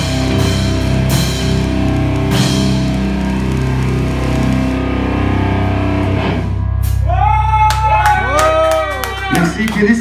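Live rock band with electric guitars, bass and drum kit playing the end of a song, with cymbal crashes early on; the music stops about two-thirds of the way through. Then scattered clapping and cheering calls over a steady amplifier hum.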